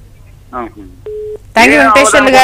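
A single short telephone beep: one steady low tone lasting about a third of a second, heard on a phone-in line between a brief faint voice and louder speech.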